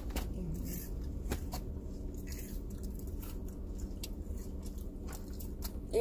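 A person chewing and biting French fries, with a few small sharp clicks, over a steady low rumble inside a car cabin.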